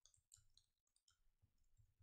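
Very faint computer keyboard typing: a scattered handful of soft key clicks.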